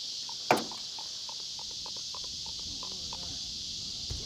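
Steady high-pitched chorus of insects, with one sharp knock about half a second in.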